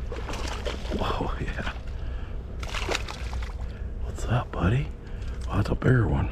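Water sloshing and splashing as a hooked largemouth bass is dragged through weedy shallows to the bank, with short wordless voice sounds near the end.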